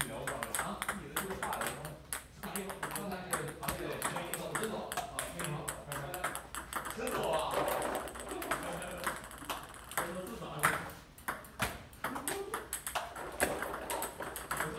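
Table tennis balls clicking in a quick, steady run as they are fed from a box of balls and struck back and forth, bouncing on a Stiga table and off paddles in a multiball drill. People's voices are underneath.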